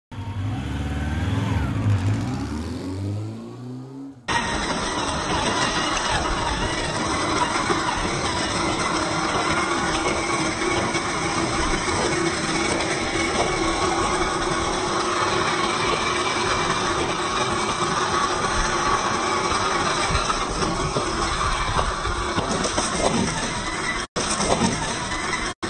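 A low intro sound with falling tones for about four seconds, cut off suddenly. Then a 1/10-scale Traxxas TRX-4 rock crawler's brushed electric motor and drivetrain whine steadily as its tyres crunch over loose gravel and stones.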